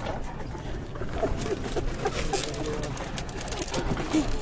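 Wicker picnic basket being handled and its lids opened by hand, with light crackling, over a steady outdoor hubbub; short, low cooing notes sound in the middle.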